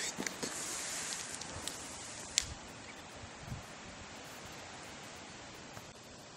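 Quiet outdoor background hiss with a few faint clicks and taps, the sharpest about two and a half seconds in.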